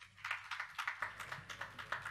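Applause from a small audience: a few people clapping, with the individual claps quick, irregular and overlapping.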